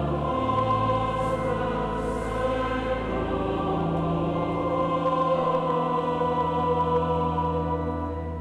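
A choir singing sacred music over long held low notes, at a steady level throughout.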